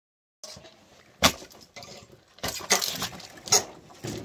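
An axe splitting firewood on a chopping block: three sharp hits a little over a second apart, the first the loudest, with split wood clattering between them.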